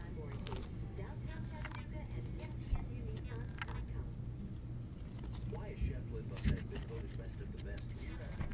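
Shrink-wrapped cardboard card boxes being handled and stacked on a table: light rustling with a few soft knocks as boxes are set down, over a low steady hum and faint voices in the background.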